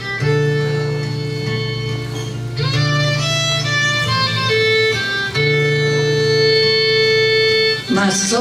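Fiddle playing a slow melody of long, held notes over acoustic guitar accompaniment.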